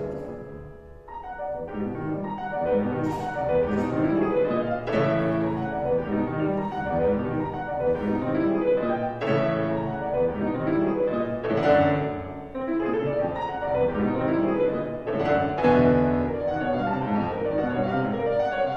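Solo concert grand piano being played: the sound drops away briefly about a second in, then comes back with dense, loud passages punctuated by sharp accented chords.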